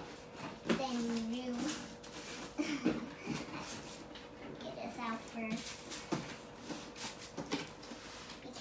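A young child making short wordless vocal sounds while cardboard pieces are shifted and knocked against a cardboard box, with several sharp clicks among the handling.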